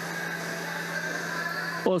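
Steady machine hum in an apple cold store: a low drone with a few fainter higher tones above it and no clicks or knocks. A voice begins right at the end.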